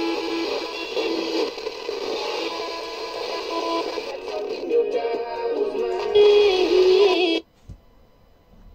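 FM radio broadcast of music with singing, heard from a TEF6686 DSP tuner as it is tuned between stations. The programme changes about halfway through, then cuts off abruptly near the end, leaving near silence and one soft thump.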